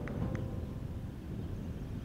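Low, steady outdoor rumble on a golf course with no commentary or music, and one faint click about a third of a second in.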